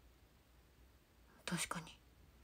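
Quiet room tone, then near the end a brief whispered utterance in two short parts from a young woman.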